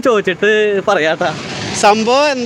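Speech only: a person talking steadily, with no other sound standing out.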